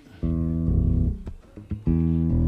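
Waterstone five-string electric bass, plucked with the fingers and played through an amp. Two notes come in quick succession, then after a short gap a low note starts near the end and rings on: a move from the E string down to the low B.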